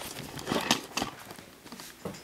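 Shoes stepping on a tile floor, a few irregular knocks, mixed with camera-handling and clothing noise.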